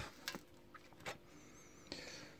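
A few faint, short clicks and ticks from handling an opened MacBook Pro with its back plate off; otherwise quiet.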